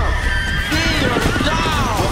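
A horse whinnying, with a long falling call about a second in, over background music.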